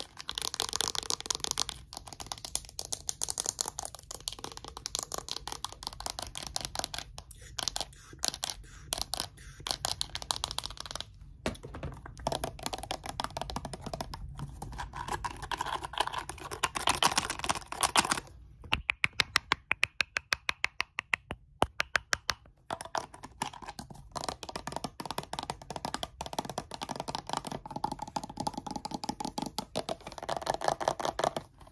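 Fast fingernail tapping and scratching on hard plastic bottles. It is a dense, irregular clatter of clicks, with a quick, even run of sharp taps, about five a second, around two-thirds of the way through.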